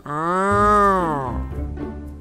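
A cartoon character's voice making one long closed-mouth 'mmm' sound, its pitch rising and then falling, over soft background music.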